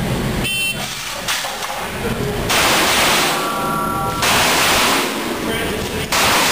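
An electronic shot timer beeps briefly to start the run, then a pistol fires repeatedly at an indoor range. The shots are so loud in the enclosed space that the camera overloads and smears them into long stretches of harsh noise.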